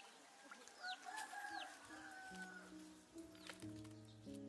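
A rooster crows faintly about a second in, with small birds chirping in short falling notes. Soft music notes begin in the second half.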